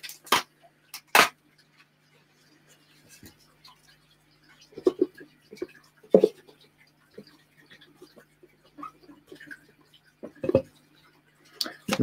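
Glass enclosure and cork bark being handled during a tarantula enclosure setup: two sharp clicks in the first second or so, then a few dull knocks several seconds apart, over a steady low hum.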